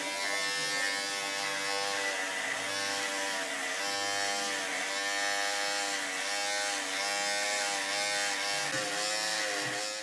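Electric hair clippers buzzing steadily, the pitch sagging briefly about every three quarters of a second as they are worked over a beard.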